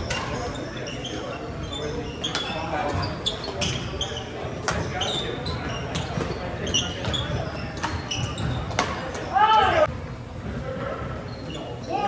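Badminton doubles rally in a large hall: repeated sharp racket strikes on the shuttlecock and short squeaks of sneakers on the hardwood court. A longer, louder squeal rises and falls about nine and a half seconds in.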